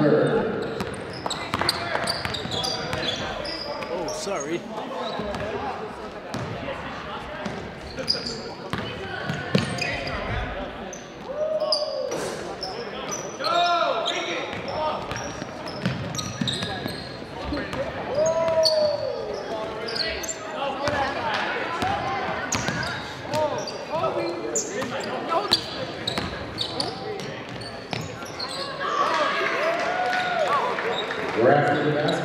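Basketball game on a hardwood gym court: the ball dribbling, with short sharp squeals from sneakers on the floor several times, over a steady murmur of players and spectators talking.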